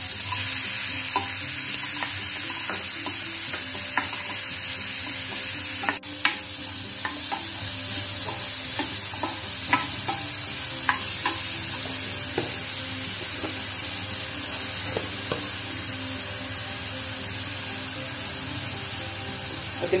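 Chopped onions sizzling and frying in hot melted butter in a stainless steel pan, with a steady high hiss throughout. A plastic spoon stirs them, clicking and scraping against the pan now and then.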